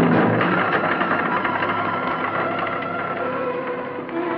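Orchestral film score music with held string tones under a rapid, rattling texture.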